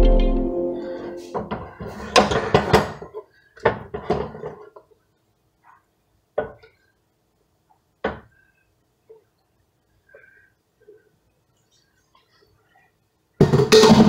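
Background electronic music fading out at the start, then scattered knocks and clinks of a metal spoon against a pot and a glass baking dish as mash is scooped out, ending in two single sharp clicks.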